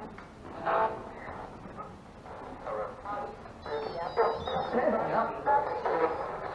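Indistinct voices murmuring in a room, with a brief high electronic chirping a little before the last two seconds.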